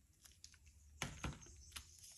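Faint handling clicks and light knocks of plastic squeeze bottles of acrylic paint being set down and picked up on a work table, the loudest knock about a second in.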